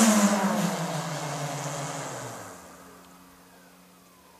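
Propulsion motor of a small vertical-landing flying vehicle spooling down after touchdown: a loud pitched drone falls steadily in pitch and fades out over about two and a half seconds, leaving a faint low hum.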